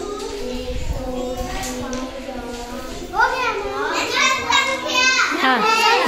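Children's voices chattering and calling out over one another, growing louder about three seconds in.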